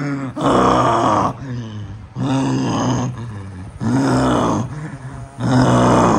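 A man's voice letting out four long, drawn-out groans in a row, each held on a steady pitch for about a second.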